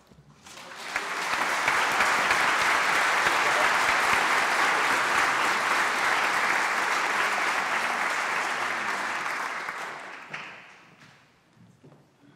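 Audience applauding. The clapping swells within the first second or two, holds steady, then dies away about ten seconds in.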